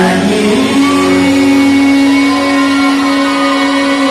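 Male singer's voice amplified through a hand-held microphone, sliding down in pitch and then holding one long steady note from about a second in.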